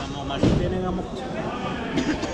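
Indoor bowling-alley din: people talking in the background, with one sudden thump about half a second in.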